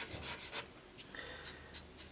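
Marker pen scribbling back and forth on paper, colouring in with a series of faint rubbing strokes.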